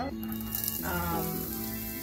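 Chopped onion beginning to sizzle in hot oil in a nonstick frying pan, starting about half a second in, under steady background music.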